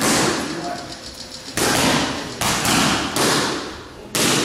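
Boxing gloves punching focus mitts: a single sharp slap right at the start, then a quick run of about four more in the second half. Each slap is followed by a short echo off the gym walls.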